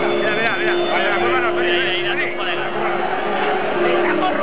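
Chatter from a waiting outdoor crowd, with a steady low hum underneath and a high-pitched sound that rises and falls quickly during the first couple of seconds.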